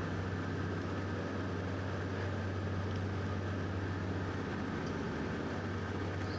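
Steady mechanical hum with a hiss over it from running HVAC refrigeration equipment, unchanging throughout.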